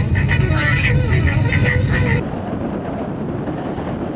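Steady low road rumble inside a moving car, with voices over it. About two seconds in it gives way to a quieter, even hiss of road noise.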